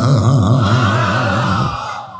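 A man's voice in sing-song preaching, drawing out the last syllable of a phrase into one long note that wavers quickly up and down in pitch and fades away near the end.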